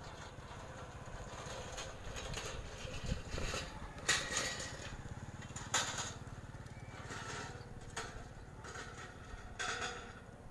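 Small motorcycle engines running along the road, a steady low drone, with a few brief rustles close to the microphone.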